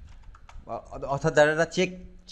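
Computer keyboard keys being typed: a short run of quick clicks in the first half second, then a man starts talking over it.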